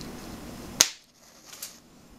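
A wooden match struck on the side of a matchbox: one sharp snap a little under a second in, then a fainter short scratchy burst as it catches.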